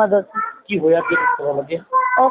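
A woman talking: only speech, with no other sound standing out.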